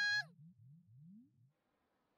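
An anime character's long, high shout of "Kita-chan!" breaks off with a falling pitch just after the start. Under it a low, repeating rising sound runs about four times a second and fades out by about a second and a half in. Near silence follows.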